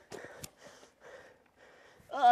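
Faint footsteps on rocky ground: a couple of light scuffs and clicks in the first half-second, then low scuffing noise.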